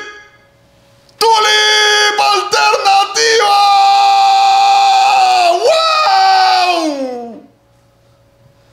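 A man's loud, excited scream. It starts about a second in and wavers at first, then holds steady for a few seconds, and near the end falls in pitch and trails off.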